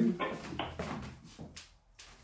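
The end of a man's spoken microphone check ("one two"), then quieter voices and a light knock or two.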